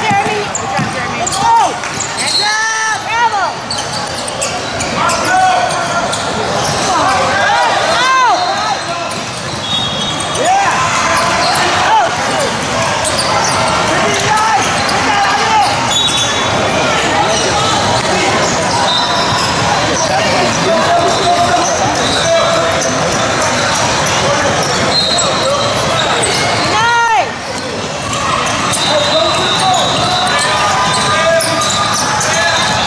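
Live youth basketball game on a hardwood gym court: a ball bouncing on the floor, sneakers squeaking in short chirps, and the voices of players and spectators, all echoing in a large hall.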